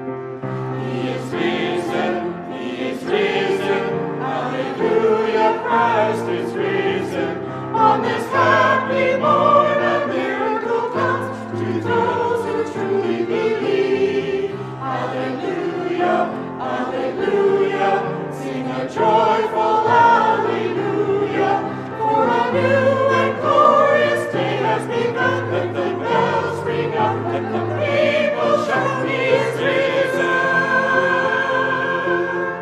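Mixed church choir of women's and men's voices singing together, with keyboard accompaniment holding low bass notes underneath.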